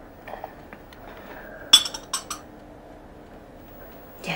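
Porcelain cup clinking as it is set down: one sharp, ringing clink just before halfway, followed quickly by two lighter clinks.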